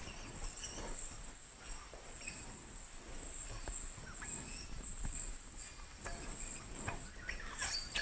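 A yo-yo spinning on its string during a string trick, with faint scattered ticks as the string is wrapped around it and comes undone.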